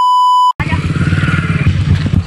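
A steady electronic test-tone beep for about half a second, cut off abruptly. Then a 125cc dirt bike engine running as the bike rides through rainwater puddles.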